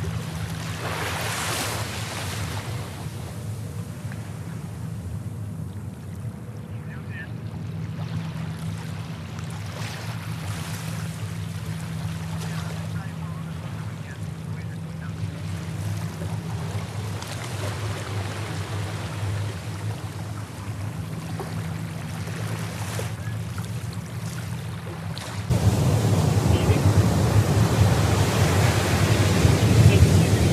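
Steady rush of ocean surf and wind on an open beach, getting noticeably louder about 25 seconds in.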